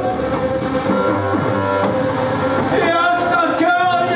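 Live electronic music played on an Alesis keyboard synthesizer: a steady held drone with shifting notes over it. A man's voice sings or shouts over it, dropping out through the middle and coming back about three seconds in.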